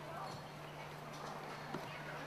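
Outdoor ambience on a park path: faint, indistinct voices and light footsteps, over a steady low hum.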